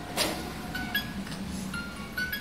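Wind-up music box playing its tune: short, high plinking notes one after another. A single sharp knock comes just after the start.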